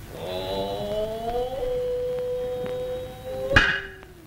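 A man's drawn-out chanted call in kabuki style, rising at first and then held on one pitch. It is cut off near the end by a single sharp strike.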